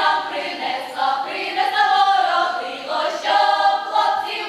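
A girls' folk choir singing a Ukrainian folk song in several voices together, unaccompanied.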